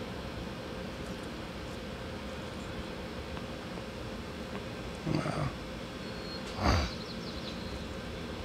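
Steady room hum, with two short exhaled laughs from a man about five and six and a half seconds in.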